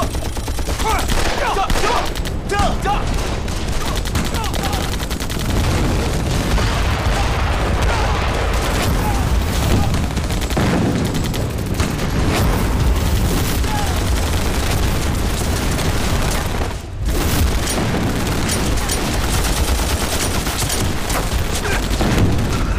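Battle sound effects: continuous rapid gunfire from rifles and machine guns, with explosions going off and men shouting. The din drops out briefly about three quarters of the way through, then resumes.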